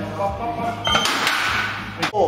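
Heavily plated barbell clanking into the squat rack's hooks about halfway through, a short metallic ring followed by a rush of rattling noise, with voices and music behind.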